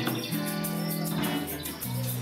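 Live band music: an electric guitar playing held chords and notes, with a hand shaker keeping a steady beat of about five strokes a second.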